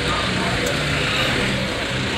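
A JMC light truck's engine idling, heard from inside the cab, a steady low rumble under continuous street noise.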